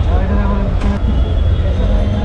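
Busy street ambience: a steady low rumble with people's voices talking nearby, and a couple of faint clicks about a second in.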